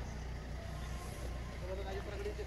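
Faint, indistinct voices of people talking over a steady low rumble.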